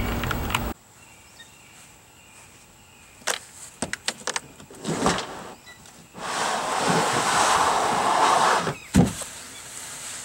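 A cordless drill-driver whirs briefly at the start, then a few clicks and knocks. The loudest sound is a plastic slide-out storage tray scraping for about two and a half seconds as it is pulled out through a camper's compartment hatch. A thump follows near the end.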